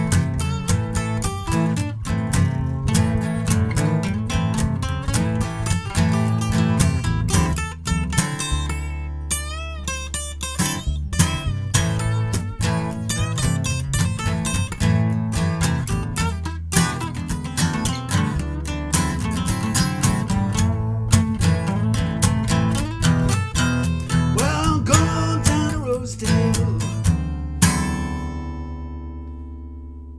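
Acoustic guitar playing a picked blues instrumental break, with a wavering bent note about ten seconds in. Near the end a last chord is struck and left to ring and fade.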